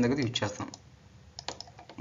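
The end of a spoken word, then a few light clicks scattered through an otherwise quiet stretch, a cluster of them about one and a half seconds in.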